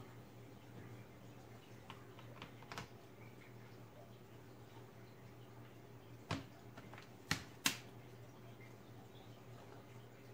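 Lenovo G50 laptop battery pack being fitted into its bay in the plastic case: a few faint taps, then three sharper plastic clicks later on as it seats and latches.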